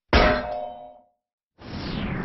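A single metallic clang sound effect that rings out and dies away within about a second, followed by silence. Near the end a new sound starts, falling in pitch.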